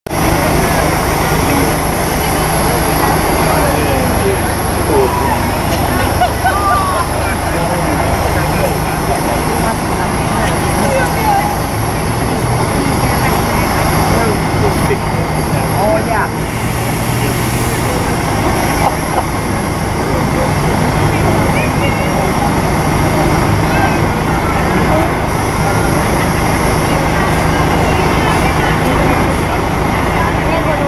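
A steady, low engine drone runs throughout, with a chatter of many people's voices over it.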